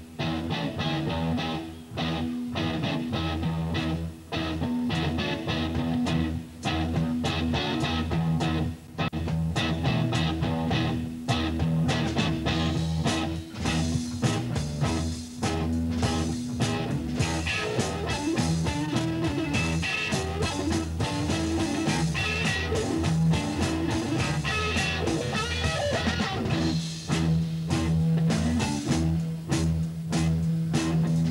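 Live psychedelic rock trio playing an instrumental passage: distorted electric guitar over sustained bass notes and steady drumming. The guitar lines grow busier about halfway through.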